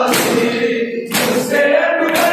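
A chorus of men chanting a noha, a Shia mourning lament, in unison, with the whole group striking their chests together (matam) in loud slaps about once a second, twice here.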